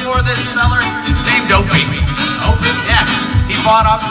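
Live acoustic band music: guitar and fiddle playing over a steady low beat.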